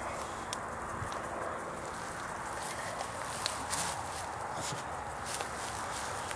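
An English bulldog's claws clicking and scuffing on a concrete sidewalk as it shifts its feet: scattered, irregular faint clicks over a steady outdoor hiss.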